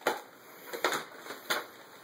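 Three short, light knocks or taps: one right at the start, then two more a little under a second apart.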